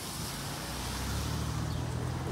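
A car driving past close by: a low engine rumble that slowly grows louder.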